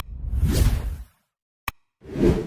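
Sound effects of an animated subscribe-and-like button: a sharp mouse-click sound, then a whoosh lasting about a second, and another short click near the end.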